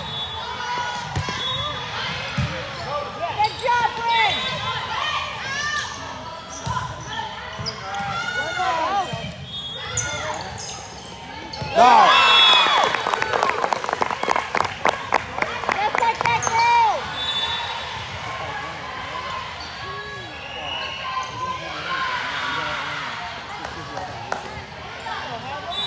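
Indoor volleyball play: players' calls and shouts, sneakers squeaking on the court and the ball being struck. About twelve seconds in, a sudden loud burst of shouting and rapid clapping lasts about five seconds.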